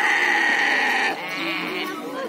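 A goat bleating: one long, quavering bleat lasting about a second that then cuts off.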